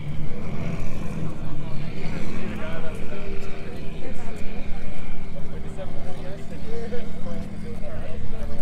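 Outdoor car-meet ambience: several people talking nearby, over a steady low rumble.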